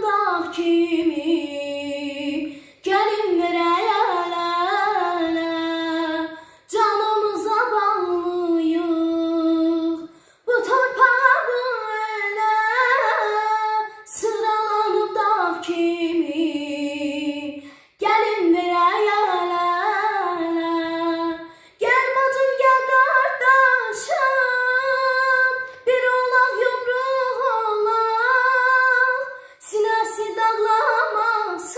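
A girl singing unaccompanied in Azerbaijani, in sung phrases of about three to four seconds with short breaths between them.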